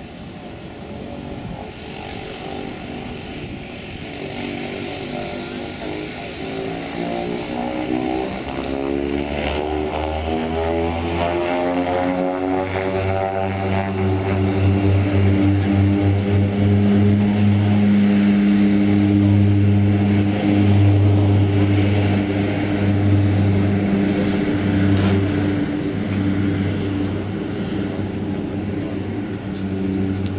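De Havilland Canada DHC-6-100 Twin Otter floatplane's two Pratt & Whitney PT6A turboprops and propellers at takeoff power as it accelerates across the water. The propeller drone grows louder and rises in pitch over the first half, then holds steady and loud as the plane lifts off.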